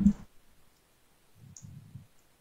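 A few faint, sharp clicks at a computer, as of keys or a mouse, during a coding task. A voice breaks off just after the start, and a short low mumble comes near the end.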